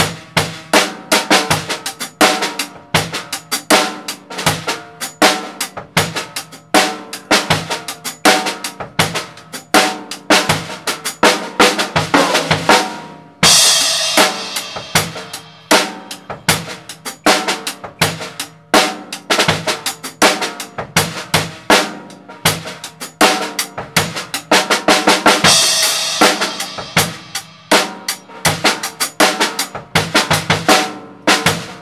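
Acoustic drum kit playing an eighth-note hi-hat groove with extra sixteenth-note bass drum and snare strokes placed between the hi-hat notes: a syncopated groove. A cymbal crash rings out about halfway through and again near the end.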